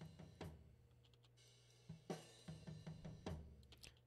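Faint playback of a multitrack drum-kit recording: scattered drum and cymbal hits, a few close together in the second half, over a steady low hum.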